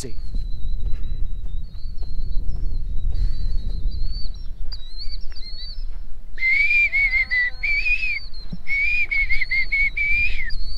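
A man whistling a few short, held phrases, starting about six seconds in, over a steady low rumble of wind on the microphone. A fainter high wavering tone runs through the first half.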